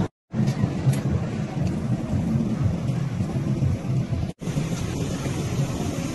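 Steady rumbling outdoor noise with hiss, as picked up by a phone's microphone, with no clear voices. It drops out briefly just after the start and again about four seconds in, where the clips are cut together.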